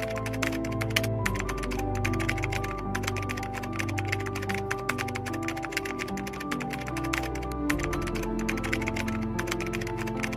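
Rapid computer-keyboard typing clicks, a sound effect that accompanies text being typed onto the screen, over background music with long held notes.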